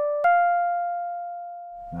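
Rhodes-style electric piano sound from the Code.org Project Beats web app, single notes previewed one at a time as piano keys are clicked: one note sounding, then a higher note struck about a quarter second in that rings on and slowly fades away.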